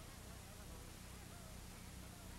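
Faint steady hum with hiss, the background noise of an old film soundtrack, with no distinct event.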